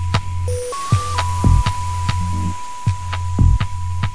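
Electronic dance track: a steady high electronic tone that steps briefly up and down in pitch over a deep bass drone, with sparse kick-drum hits and clicks. The pattern loops about every four seconds.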